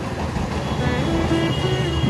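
Steady low background rumble, like distant road traffic, with a few faint pitched tones drifting in and out.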